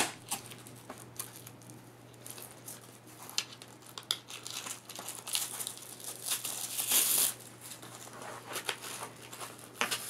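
Velcro strap being threaded through a foam kiteboard footpad and handled: rustling and small clicks, with two longer ripping noises about five and seven seconds in as the Velcro is pulled apart. A sharp knock right at the start.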